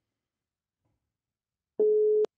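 A phone line's ringback tone: a single steady beep starts near the end, after near silence. It is cut off by a click as the call is answered.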